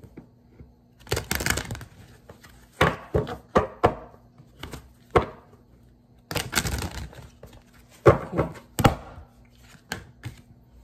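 A deck of oracle cards being shuffled by hand, in several short bursts of slapping and clicking card noise with pauses between.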